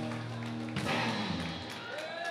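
A live band's final chord rings out on keyboard, bass and guitars, then is cut off with a thud about a second in. A few hand claps follow as the chord dies away.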